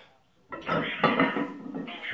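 Weight plates clinking and rattling on a barbell's sleeves as a deadlift is pulled from the floor to lockout, with muffled talk from a radio underneath. The sound starts suddenly about half a second in.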